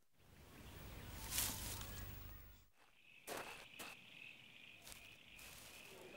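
Faint outdoor ambience with a rustle or two. From about three seconds in, crickets chirp in a steady high trill, with a few light clicks over it.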